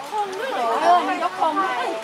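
Several people chattering close to the microphone, voices overlapping.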